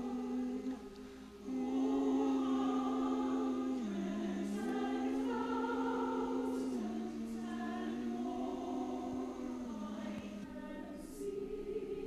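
Church choir singing slowly in long, held notes that step from one pitch to the next, with a brief breath pause about a second in.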